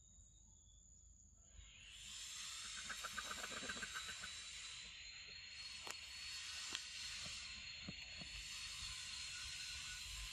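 A hissing insect chorus that comes in about a second and a half in, then swells and eases, with a few light clicks around the middle.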